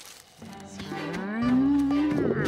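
A cartoon stegosaurus's long, low vocal call, rising in pitch about a second in and then held, over background music that comes in about half a second in.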